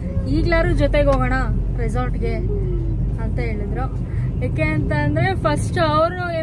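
A woman talking inside a car's cabin, over a steady low rumble of the car driving.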